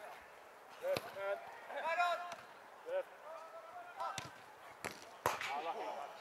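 Football players shouting to each other across the pitch, with about four sharp thuds of the ball being kicked, the loudest about five seconds in.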